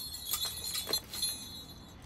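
Hands handling wrapped Christmas decorations in a storage bin: a few short rustles and light clicks of crumpled newspaper, plastic bags and ornaments being moved.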